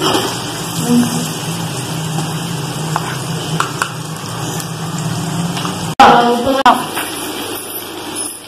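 Onion-tomato masala frying in oil in an aluminium pot, a steady sizzle under a low hum, with a brief voice about six seconds in.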